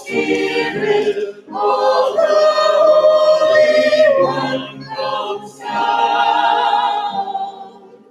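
A small church choir singing in sustained phrases with short breaks between them, the last phrase dying away near the end.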